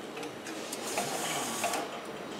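AE-2 semi-automatic labeler running for about a second, its rollers turning the sausage as a self-adhesive label feeds and wraps onto it, with clicks as it starts and stops.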